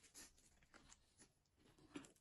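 Faint close-up chewing of a mouthful of bread and crispy fried fish, with soft mouth noises and small irregular ticks, and a slightly louder click near the end.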